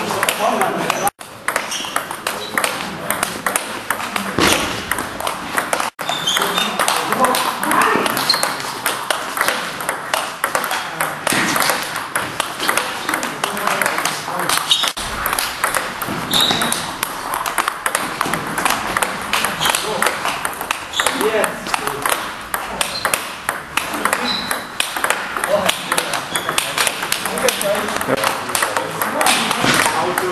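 A table tennis rally against a return board: quick, continuous clicks of the celluloid ball off the rubber bat, the table and the rebound board, several a second, in an echoing hall.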